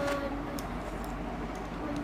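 Quiet room noise with a few faint light clicks of a steel spoon against a mixing bowl as powder is spooned into crushed biscuits.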